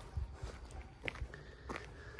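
Faint footsteps on a dirt path: a few soft, scattered ticks over a low rumble.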